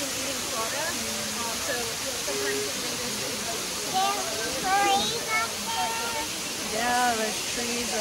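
Hickory Nut Falls, a tall waterfall cascading down a steep granite face: a steady rush of falling water. People's voices talk over it around the middle and near the end.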